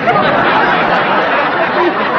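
Studio audience laughing loudly, breaking out right after a punchline and holding steady.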